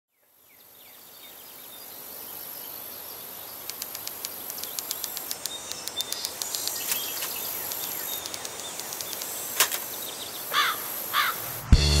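Outdoor ambience fading in from silence: a steady high hiss with scattered faint clicks, and two short bird chirps near the end. Music with a deep bass comes in abruptly just before the end.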